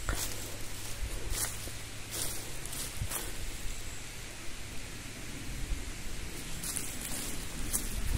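Footsteps and rustling through dry leaf litter and forest undergrowth, with a few short, sharp crackles along the way.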